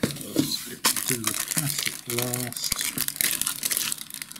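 Cardboard kit box and paper being handled: a busy run of rustling, scraping and crinkling as the box is opened and the instruction sheet slid aside. A short hummed voice sound comes about halfway through.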